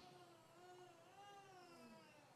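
Near silence: room tone with a faint, wavering pitched sound in the background.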